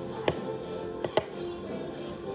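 Background music, with three sharp wooden knocks as the wooden figurine being buffed with a cloth bumps against the wooden board: one about a quarter of a second in, then two close together just past a second in.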